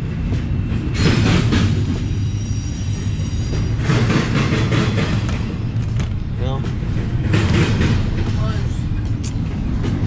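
Double-stack container freight train rolling past, a steady low rumble of wheels and railcars.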